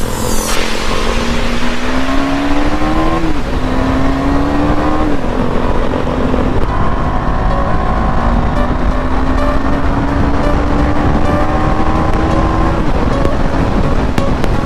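KTM 390 Duke's single-cylinder engine accelerating hard through the gears: its pitch climbs, drops sharply at two quick upshifts about three and a half and five seconds in, then rises slowly and steadily for several seconds before falling off near the end. Wind rush over the microphone runs underneath at speed.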